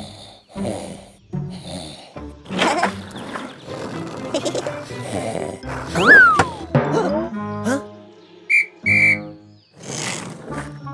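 Cartoon background music with sound effects: a quick sliding whistle glide about six seconds in, and two short high whistle tones near the end.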